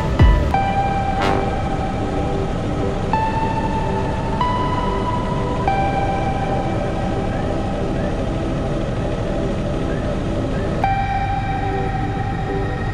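Background music of long held synthesizer-like notes, shifting to a new pitch every few seconds, over a steady low drone of helicopter cabin noise.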